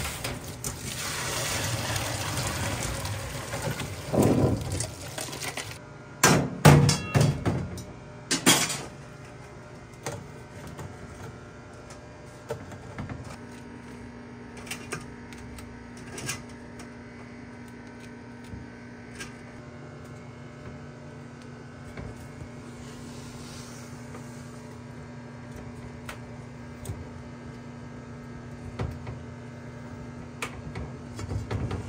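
Boiling water and prawns poured from a large aluminium pot into a bamboo strainer over a stainless steel sink: a rushing pour of about four seconds as the just-boiled prawns are drained. Several sharp metallic clanks follow from the pot and pot tongs, then only small clicks over a faint steady hum.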